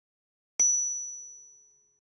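A single bright chime sound effect: one ding struck about half a second in, with a high clear ring over a fainter low tone, dying away evenly over about a second and a half.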